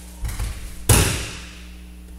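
An aikido partner being thrown onto tatami mats: a few low thumps of feet and body, then one loud thud of the breakfall about a second in that echoes briefly in the hall.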